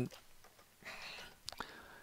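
A faint, breathy whispered voice sound about a second in, and a few soft clicks from a computer keyboard, two of them close together near the end.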